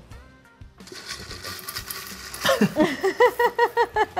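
Folded paper slips being stirred and rustled by hand in a glass bowl. From about two and a half seconds in, a woman laughs in a quick run of 'ha-ha' pulses, which are the loudest sound here.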